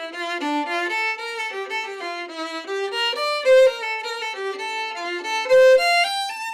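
Solo violin played with the bow: a melody of fairly quick notes, with a few louder held notes about halfway through and near the end.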